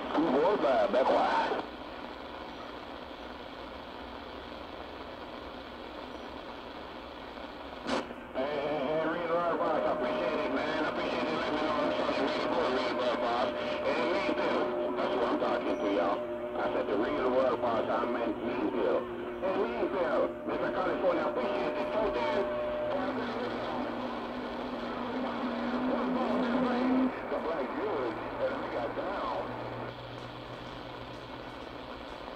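AM CB radio on channel 6 (27.025 MHz) through a shortwave receiver: a voice cuts off, leaving static hiss. About eight seconds in there is a click, and then garbled, overlapping voices run with steady whistling tones from stations transmitting on top of each other. Near the end it drops back to hiss.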